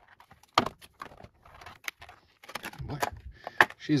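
A stiff clear plastic blister tray clicking and crackling in a few short, sharp snaps as hands tug at a folding knife held tight in it.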